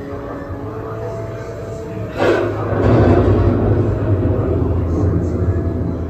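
Dark-ride soundtrack: sustained eerie tones over a low hum, then a sudden loud crash about two seconds in that runs on as a dense, rumbling din.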